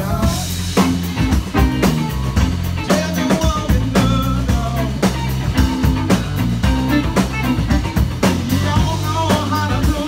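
Live blues band playing: electric guitar over a drum kit keeping a steady beat, with a man singing into the microphone.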